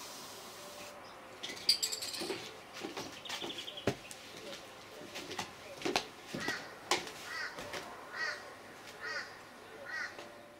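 A bird calling: short calls repeated about once a second through the second half, with a few sharp clicks scattered in.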